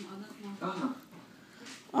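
Two faint, brief vocal sounds in the first second, a voice making short pitched sounds.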